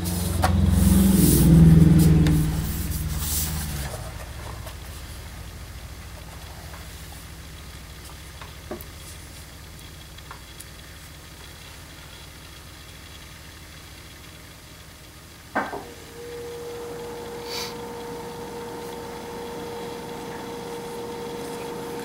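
Hands handling a MacBook Air's aluminium bottom case, with rubbing and shifting noise for the first few seconds. Then a low steady hum, a single click about fifteen seconds in, and a faint steady tone that holds to the end.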